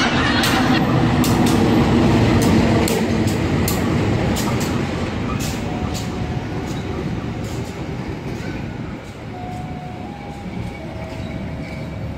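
Passenger train entering the station: the diesel locomotive's engine rumbles past first, then the coaches roll by with sharp wheel clacks. The sound slowly dies away, with a few brief squeals near the end.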